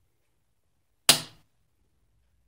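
Hinged plastic lid of a four-slot AA/AAA battery charger snapping shut: one sharp click about a second in, dying away quickly.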